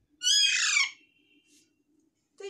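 A young Alexandrine parakeet gives one loud, harsh squawk of under a second, ending in a falling note.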